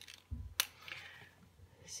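A paint pen being picked up and handled over a sketchbook: one sharp plastic click about half a second in, then a faint light rustle.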